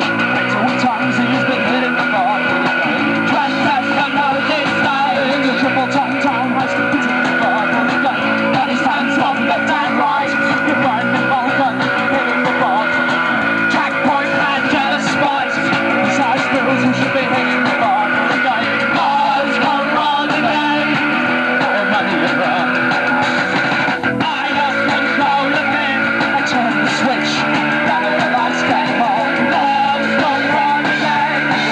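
Live band playing an amplified rock song on electric guitar, bass and drums, without a break.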